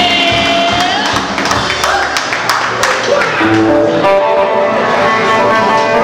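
A live band: a female vocalist holds a sung note that ends about a second in. The band plays on with drums and cymbal hits, and sustained instrumental lead notes come in a little past halfway.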